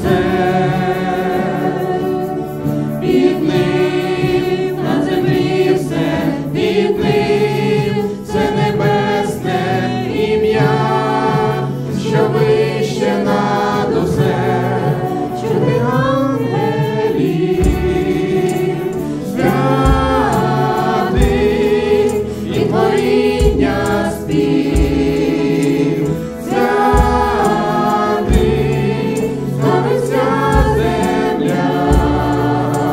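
Worship band performing a Ukrainian praise song: a man and two women sing together into microphones, backed by acoustic guitar and keyboard. Low drum beats come in a little past halfway.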